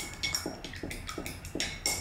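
A quick, uneven run of light clinks and taps, about five a second: a paintbrush being knocked against a hard paint or water container.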